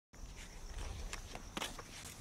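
Faint low rumble with a few soft, irregular knocks.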